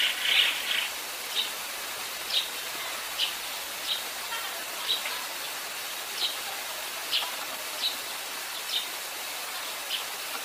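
Eurasian tree sparrow chirping: a quick run of chirps at the start, then single short chirps about once a second, over a steady hiss.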